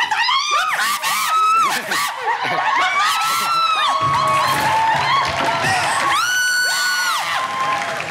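Shrill screaming and shrieking from several people at once, overlapping cries that rise and fall. About six seconds in, one long high scream is held for about a second.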